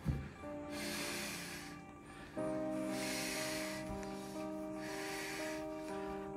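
A woman in labour taking slow, heavy breaths through a contraction, three long breaths about two seconds apart, over soft background music with long held notes.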